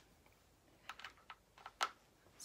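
A few faint, sharp plastic clicks, about five in the second half with the loudest near the end, as a charging cord is plugged into the battery on a medical IV pole.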